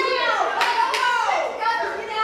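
Young women's voices on stage, cut through by two sharp claps about a third of a second apart near the middle.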